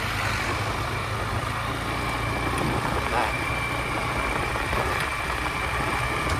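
Motorcycle engine running steadily under way, with wind and road noise at the microphone.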